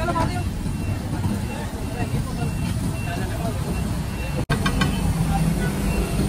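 Busy roadside street ambience: a steady low rumble of passing traffic under the babble of many voices, broken by a sudden brief cut about four and a half seconds in.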